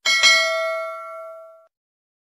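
A notification-bell ding sound effect: one bright bell strike that rings on and fades out in about a second and a half.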